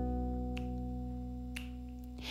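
A guitar chord left ringing and slowly fading, with two finger snaps about a second apart keeping the beat.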